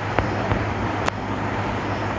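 Steady background noise with a low hum, broken by a few light clicks, the sharpest about a second in.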